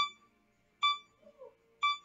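Phone interval timer beeping three times, about a second apart, counting down the last seconds of a rest period. Each beep is short and clear with a sharp start and a quick fade.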